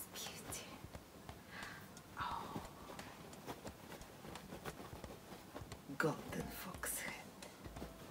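A woman's quiet voice murmuring and whispering, with light clicks and rustles as fur hats and pelts are handled.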